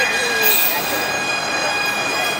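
A steady high-pitched whining tone with several overtones, holding one pitch throughout, over faint voices.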